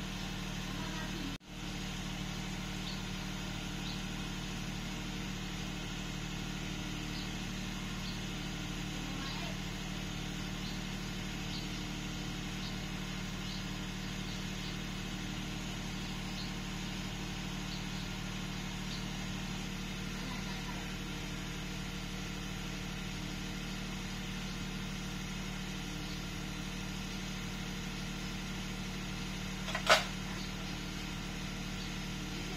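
Steady low mechanical hum, like a motor running, with faint scattered ticks; it drops out briefly about a second and a half in, and a sharp clank comes at the very end.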